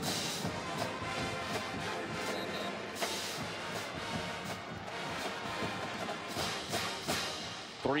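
Music playing over steady stadium crowd noise, with scattered sharp drum-like hits.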